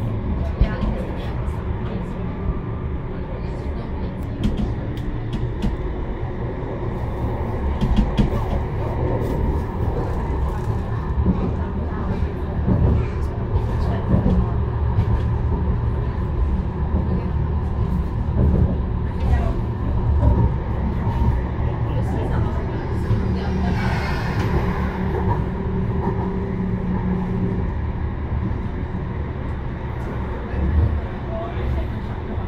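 A Manchester Metrolink Bombardier Flexity Swift M5000 tram running on its line, heard from inside the driver's cab: a steady low rumble and hum with scattered clicks. About 24 seconds in there is a brief, higher-pitched squeal that rises and falls.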